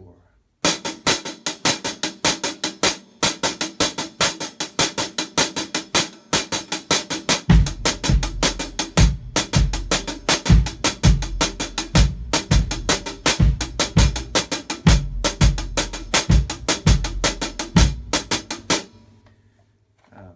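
Drum kit played in a timba groove: a two-handed cascara pattern of rapid sticking, the left hand filling the spaces between the cascara strokes. About seven and a half seconds in, the kick drum joins with a bombo/tumbao pattern. The playing stops about a second before the end and rings out.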